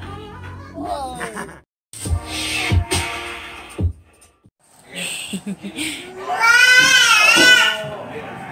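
Voices over background music, then near the end a baby's loud, high-pitched voice, wavering in pitch for about a second and a half.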